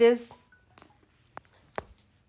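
A woman's voice says one short word, then two faint, sharp taps of a stylus on a tablet screen, less than half a second apart, near the end.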